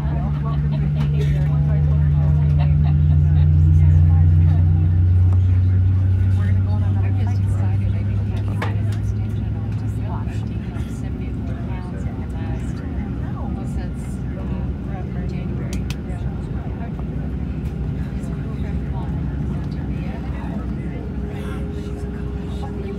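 Cabin noise of a Boeing 737-700 taxiing, its CFM56-7B engines near idle: a steady drone, with a deep hum that swells over the first few seconds and fades away by about ten seconds in.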